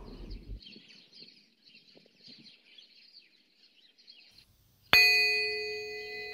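A bell-like chime struck once near the end, ringing with several clear tones that slowly fade.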